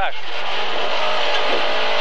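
Lada 2107 rally car's four-cylinder engine running hard, heard inside the cabin, over steady road and tyre hiss.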